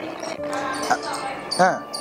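Voices talking over background music, with a short sharp knock about a second in and a loud drawn-out exclaimed 'haan' near the end.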